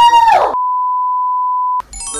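A loud, high-pitched cry in the first half-second, then a steady single-pitch censor-style bleep tone at about 1 kHz added in editing, held for just over a second and cutting off abruptly.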